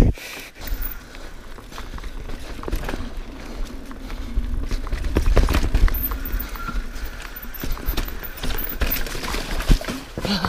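A mountain bike rolling fast down a dry dirt singletrack. The tyres crunch over dirt and fallen leaves, and the bike rattles and knocks over bumps, with a low wind rumble on the microphone that is strongest about halfway through.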